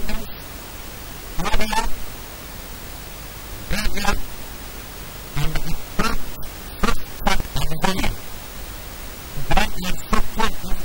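A man speaking into press microphones in short, halting phrases with pauses between, over a steady hiss.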